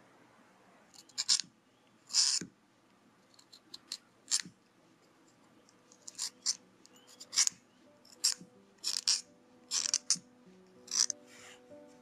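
Wooden pencil being sharpened in a handheld sharpener: about a dozen short, dry scraping crunches at irregular intervals. Soft background music comes in during the second half.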